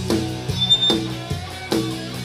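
Punk band playing live with no vocals: electric guitars, electric bass and drum kit in a steady, driving rhythm.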